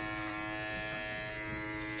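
Electric hair clippers running with a steady buzz.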